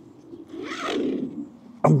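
A hot tent's door being opened: a zip being pulled and the tent fabric rustling, one noisy sweep lasting under a second, about halfway through.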